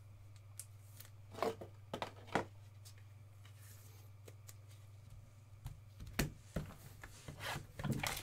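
Trading cards and a card pack being handled on a tabletop: scattered light clicks and brief rubbing sounds over a steady low hum, with the pack set down on the table near the end.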